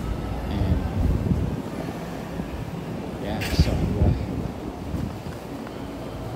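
Wind buffeting a handheld camera's microphone in a low, uneven rumble, with indistinct voices and a brief hiss about three and a half seconds in.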